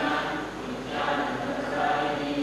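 A group of voices singing together, with held notes.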